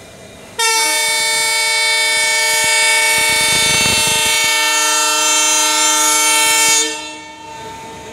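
Train horn of the departing military special, one long steady blast of several tones together for about six seconds, starting about half a second in and then cutting off, over the rumble of the coaches rolling past.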